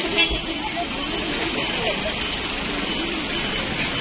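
Street noise from vehicles running, with people talking in the background. There is a brief low thump just after the start.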